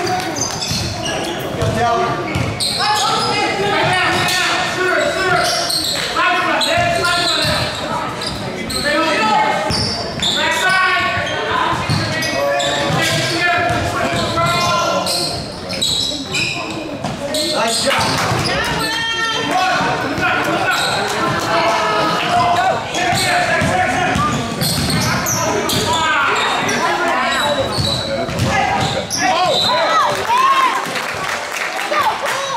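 Basketball game in a hardwood-floored gym: a ball bouncing on the court amid players' and spectators' shouts and voices.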